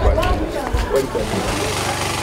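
Outdoor voices over a low rumble, then from about one and a half seconds in a small engine running steadily with an even beat.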